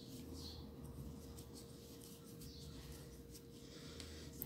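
Faint rustling and soft ticks of crochet thread being worked with a crochet hook, over a faint steady hum.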